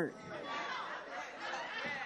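Faint murmur of voices from a seated congregation in a short pause of the preaching.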